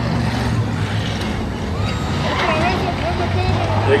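Race car engines running on the oval, a steady low drone, with people's voices talking over it in the second half.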